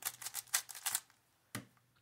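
A plastic 3x3 speed cube being turned quickly by hand: a fast run of clicking layer turns through the first second, then one more click about a second and a half in.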